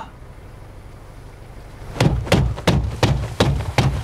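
A low steady rumble, then from about two seconds in a run of hard thumps, about three a second: a hand pounding on a car's window and door.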